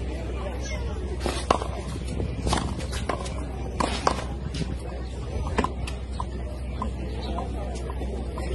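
Punchball rally: a series of sharp smacks as a rubber ball is punched by fist and rebounds off a concrete wall and the court. The loudest smack comes about one and a half seconds in, and the hits thin out after about six seconds, over a steady low rumble.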